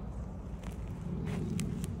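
Wind buffeting the phone's microphone with a steady low rumble, and a few soft clicks and rustles from about the middle onward.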